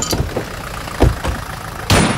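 Low, steady vehicle engine rumble with a thud about a second in, then a sudden loud crash just before the end.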